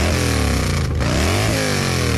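Motorcycle engine revving, its pitch falling, rising briefly about a second in, and falling again.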